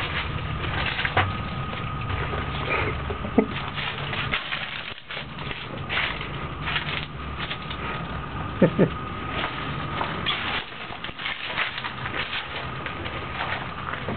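Footsteps crunching on a gritty floor with camera handling noise, over a steady low hum; a woman says "oh" about two-thirds of the way through.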